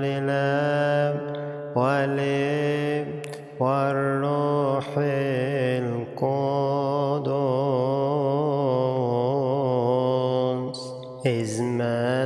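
Solo voice chanting a Coptic Agpeya prayer in Arabic, drawing each syllable out into long, wavering melismatic notes. The phrases are broken by short pauses for breath, and the longest phrase is held for about four seconds in the second half.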